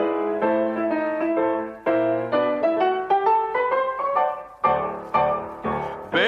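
Piano playing the introduction to a Maastricht carnival song (vastelaovendsleedje), in struck notes that ring and fade. The melody climbs upward in the middle, then a few heavy chords with deep bass notes lead toward the singing.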